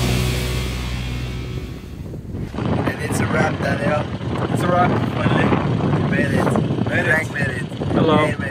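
Heavy rock music fades out over the first two seconds, then men's voices talk.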